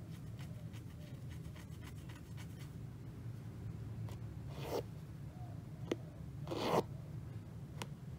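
Cotton embroidery floss being drawn through 14-count aida cloth in two rasping pulls, the second the louder, with two sharp clicks of the needle going through the fabric. A low steady hum runs underneath.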